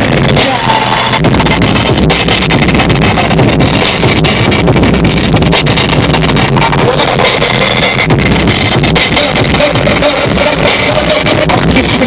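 Live hip-hop performance played loud through a concert sound system, recorded from within the crowd.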